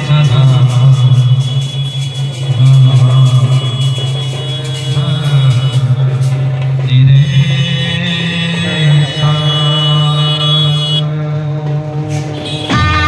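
Indian procession brass band playing a devotional melody in long, held notes over a steady low bass.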